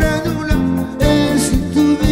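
A man singing a song into a handheld microphone over instrumental backing with a steady beat of about two strokes a second.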